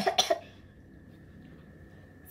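A woman gives two quick coughs right at the start.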